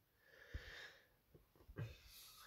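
Near silence with a faint breath drawn in, lasting about half a second, early in the pause between sentences.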